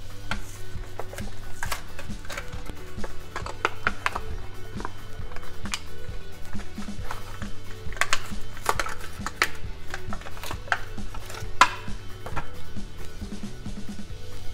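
Background music with a steady low tone, over scattered sharp clicks and crackles from a Hot Wheels blister pack being pulled open and the toy car taken out.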